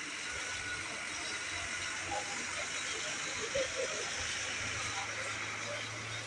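Busy bus-station ambience: indistinct chatter of people over a steady hiss. About two-thirds of the way through, the low, steady hum of an idling coach's diesel engine comes in.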